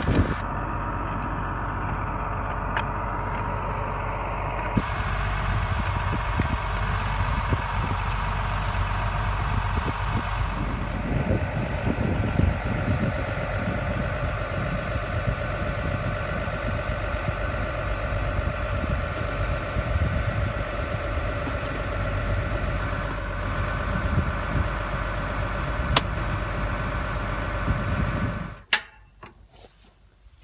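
An engine idling steadily, cutting off suddenly near the end.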